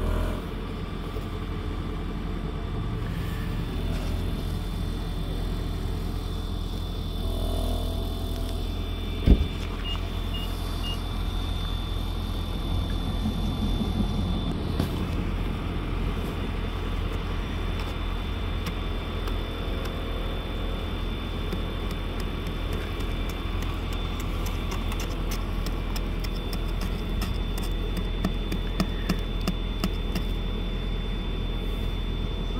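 Plastic ice scraper scraping snow and ice off a car windshield in quick, scratchy strokes that grow busier near the end, over a steady low rumble. One sharp knock comes about nine seconds in.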